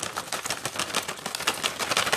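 Plastic tea packet crinkling right up against the phone's microphone: a dense, rapid run of crackles.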